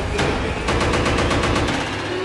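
Sharp, gunfire-like hits over a sustained musical drone: one every half second at first, then a rapid burst of about ten a second through the second half.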